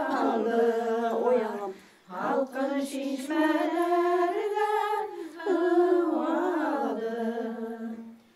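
Women singing unaccompanied, a slow folk melody with long held and gliding notes, broken by a short pause about two seconds in.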